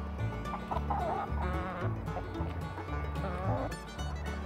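Domestic hens calling over background music: drawn-out calls that waver in pitch, about a second in and again near the end.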